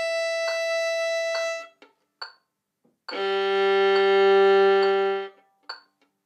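Violin playing two long bowed notes on the open strings: a high open E for about two seconds, a pause, then a louder low open G swelling and fading for about two seconds, both straight bow strokes. A metronome ticks steadily under it at 69 beats a minute.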